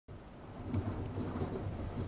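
A low, fluctuating rumble under a steady hiss, growing a little louder in the first second.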